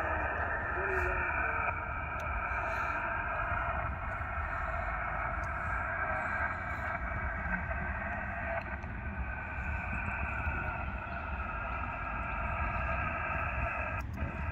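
Amateur HF radio receiver audio from the transceiver's speaker: a station's reply on single-sideband, a faint, hard-to-make-out voice in steady narrow-band static.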